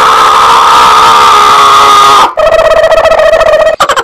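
Loud electronic sound effect: a sustained ringing tone for a little over two seconds, which breaks off and gives way to a buzzing tone pulsing rapidly.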